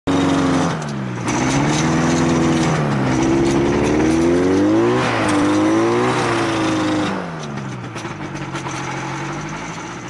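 Motorized hang-glider trike engine and propeller running close up while the trike rolls along the runway, its pitch dropping and rising several times as the throttle is worked, then settling lower about seven seconds in.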